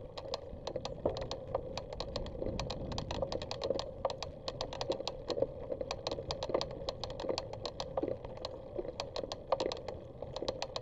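Bicycle and its camera mount rattling while riding a dirt trail: quick, irregular clicks and ticks, several a second, over a low, steady rumble of tyres rolling on dirt.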